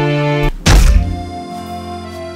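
A single loud, heavy thunk, an edited impact sound effect, about half a second in, over background music that carries on after it.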